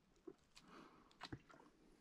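Near silence: faint outdoor ambience with a few soft, brief ticks about a second in.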